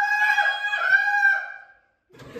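A person's loud, high-pitched shriek, held at nearly one pitch for about a second and a half before fading out.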